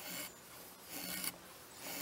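A wooden stick drawn across the edge of a knife blade fixed upright in a log, peeling off thin curled wood shavings: a dry scraping rasp with each stroke, the strokes about a second apart.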